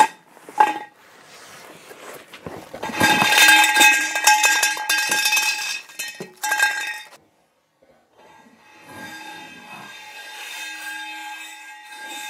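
Hollow metal feeder-leg poles clattering and ringing against each other and the concrete as they drop, after a couple of knocks from a wooden board. After a second of dead silence the same ringing clatter plays again, fainter.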